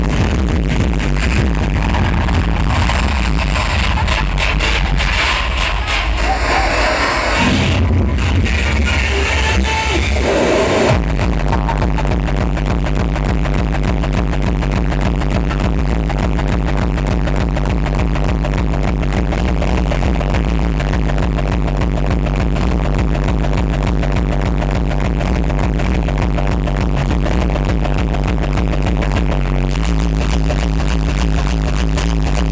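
Terrorcore (extreme hardcore techno) played loud over a club sound system, built on a distorted kick drum. About eleven seconds in the track changes abruptly from a looser section to a steady, dense kick pattern that holds to the end.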